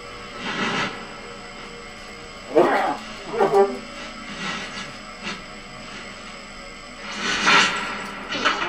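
Free-improvised music for saxophone and electronics: a quiet bed of steady held tones, broken by sparse short bursts and wavering, sliding pitches. The loudest moments come about two and a half seconds in and again near the end.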